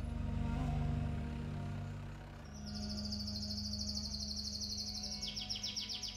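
A caged songbird singing a rapid high trill that starts about two and a half seconds in, joined by a lower trill near the end, over low steady background music.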